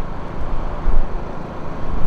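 Road traffic noise: a steady rumble of passing cars, swelling to a peak about a second in.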